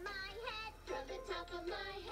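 A children's song: a voice singing a melody over backing music.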